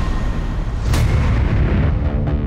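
Deep booming dramatic sound effects with heavy rumble, with one sharp hit about a second in, then the sound fading out.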